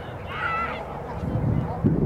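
A single short, high-pitched honk-like call about half a second in, over a low background rumble.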